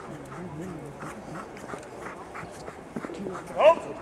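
Footsteps crunching over snow under a low murmur of voices. Near the end comes one short, loud, high cry that rises and falls.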